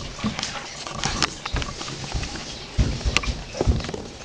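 Irregular dull knocks and bumps of handling: a glass jar being set on a wooden table and a handheld camera being moved close to it, with a cluster of low thumps near the end.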